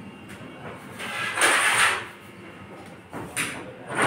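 A hand vegetable peeler scraping down the skin of a white radish: one long, loud stroke about a second in, then a few shorter strokes near the end.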